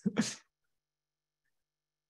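A person's short laugh, lasting under half a second, then dead silence.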